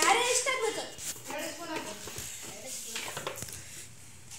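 A person talking at the start, then quieter talk and a few light clicks and knocks in a small room.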